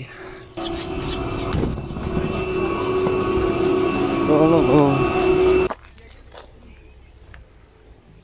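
Chairlift station drive machinery running: a steady hum and whine over a rumble, starting about half a second in and cutting off suddenly near six seconds. A brief voice is heard about four and a half seconds in.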